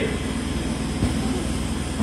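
A steady, even hiss with a low rumble under it: the background noise of the hall picked up through the open microphone in a break in speech.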